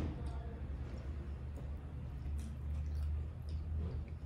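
Faint wet chewing of a soft mouthful of doubles (fried flatbread filled with curried chickpeas), with a few light mouth clicks, over a steady low hum.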